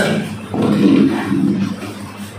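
A man's voice speaking loudly in Telugu, with a click at the very start.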